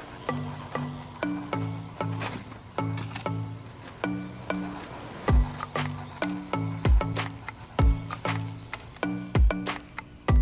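Background music: a repeating pattern of short, stepping notes with a light percussive beat, a heavy bass drum coming in about halfway through.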